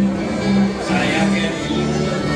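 A live country band playing amplified music with electric and acoustic guitars and drums over a steady bass line.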